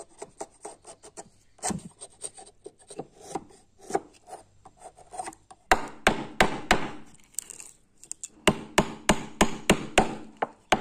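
Steel wood chisel cutting a notch into a block of wood: at first a run of light, quick taps. About six seconds in it gives way to louder, sharp blows on the chisel, a few a second, with a short pause shortly before the end.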